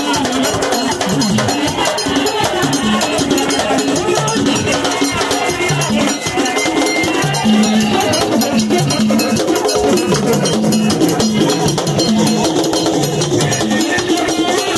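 Haitian Vodou drumming: hand drums beaten in a fast, steady rhythm, with a group of voices chanting a melody over them.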